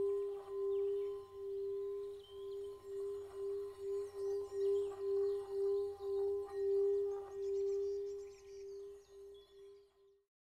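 A steady droning tone that swells and dips about twice a second, fading away over the last two seconds.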